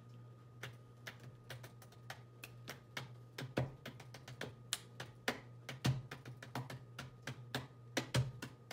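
Irregular light taps and clicks, like typing on a keyboard, several a second with a few louder knocks among them, over a low steady hum.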